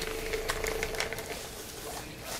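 Small battery motor of a handheld Disney mister fan spinning its blades: a steady whirring hum that fades out about a second and a half in.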